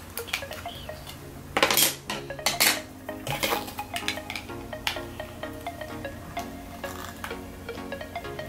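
Background music playing under the clicks and clatter of small plastic toy pieces being handled and fitted together, with a louder clatter about two seconds in.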